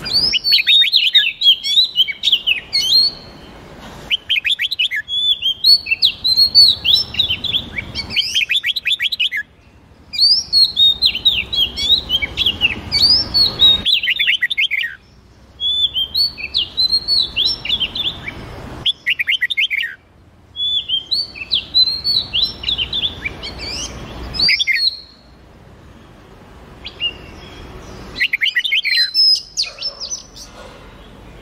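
Songbird singing in repeated phrases of rapid, varied chirping notes. Each phrase lasts one to four seconds, with short pauses between.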